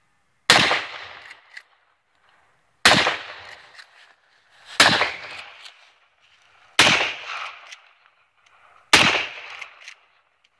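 .30-30 rifle fired five times, about two seconds apart, each loud shot followed by a decaying echo of about a second.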